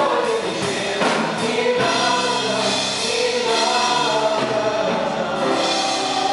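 Four female voices singing a worship song in close harmony, with long held notes, over piano accompaniment.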